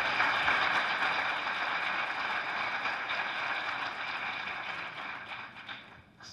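Audience applauding, a steady patter of many hands clapping that gradually dies away toward the end.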